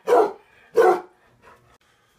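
A dog barking twice, two loud barks about two-thirds of a second apart.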